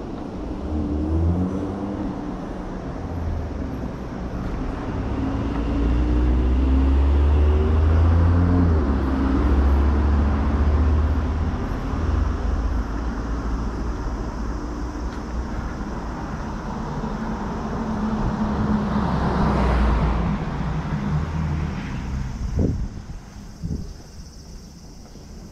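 Road traffic: a vehicle engine running and rising in pitch as it accelerates past, loudest in the first half, with another vehicle swelling past later. Two sharp knocks come near the end.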